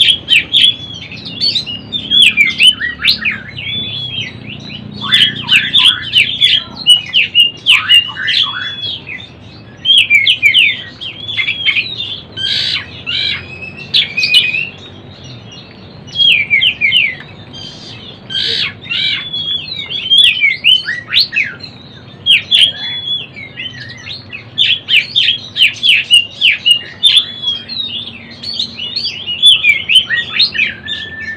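Oriental magpie-robin (kacer) singing a long run of quick, varied chirping and warbling notes in phrases, with a couple of short pauses. It is a young bird practising its full, open song (ngeplong).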